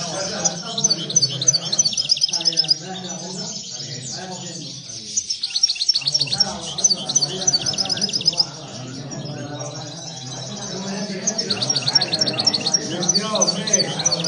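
Caged European goldfinches singing: fast, high twittering trills that come in bursts with short pauses between.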